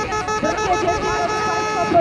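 People's voices talking, over faint steady held tones.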